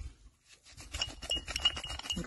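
Light clinks and clicks from hands working apart a segment of a UR-77 mine-clearing line charge, its red detonating-cord core being handled. They start about half a second in, with a faint high peeping tone that comes and goes.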